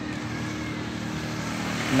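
A steady, low mechanical hum.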